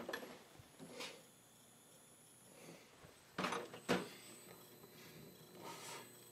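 Faint handling noise from a handheld camera being moved: a few short knocks and rustles, the sharpest about four seconds in, over quiet room tone.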